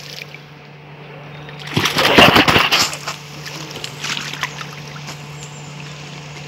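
A hooked pike thrashing at the water's surface while being played on a lure rod, with the loudest splashing about two seconds in and smaller splashes after.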